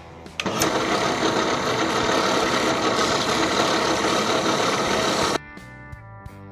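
Drill press running with a bolt head spun against sandpaper: a loud, steady sanding noise that starts about half a second in and cuts off abruptly near the end, with guitar music before and after.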